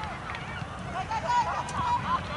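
A flock of birds calling in many short, overlapping honking calls, crowding together in the second half.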